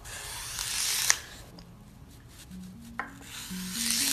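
A metal blade pressed down through a block of green floral foam, two cuts: each a scraping sound that grows louder and ends in a sharp snap as the blade breaks through, the first about a second in and the second at the very end, with a click just before the second cut begins.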